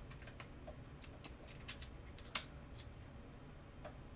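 Crab shell being picked apart by hand: a scatter of small clicks and snaps, with one sharp, louder crack a little past two seconds in.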